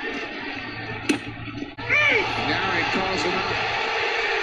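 Baseball TV broadcast audio: indistinct voices mixed with music, with one sharp knock about a second in.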